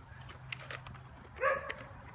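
A single short, pitched vocal call about one and a half seconds in, over a faint low hum and a few small ticks.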